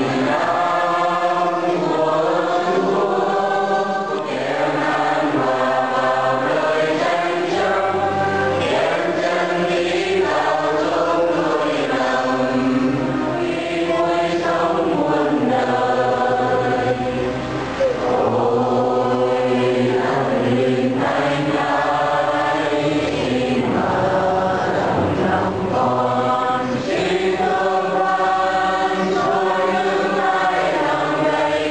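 A choir singing a hymn, the voices continuous with held notes that change every second or so.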